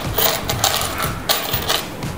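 Gold-coloured aluminium curb chain clinking as it is handled and laid down on a tabletop: several short metallic jingles of loose links.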